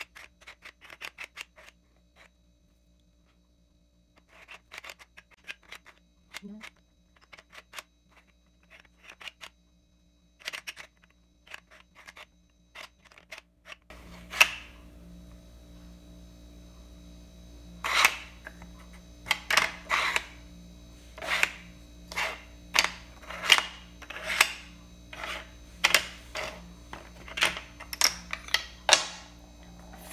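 Plastic puzzle tiles of the L'aventurier sliding puzzle being pushed around in their tray, clicking and knocking against each other and the frame. The clicks are sparse and light at first, then louder and about one a second over a low steady hum that comes in about halfway.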